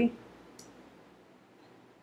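A single faint click of a computer keyboard key, about half a second in, as a typed entry is confirmed; otherwise quiet room tone.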